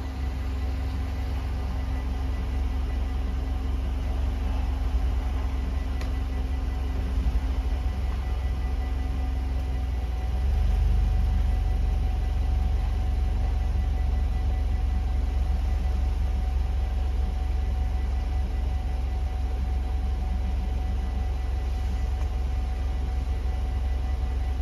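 Low steady rumble of a car's engine idling close by at a closed railroad crossing, growing a little louder about ten seconds in as the car pulls up. The crossing's warning bells ring faintly and steadily behind it.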